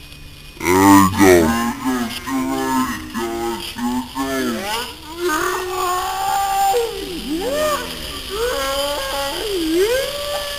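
Young voices whooping and crying out in long, sliding, wordless calls. From about halfway through, a steady hiss builds beneath them as the sparkler bomb, a toothbrush holder packed with sparklers, flares up and burns.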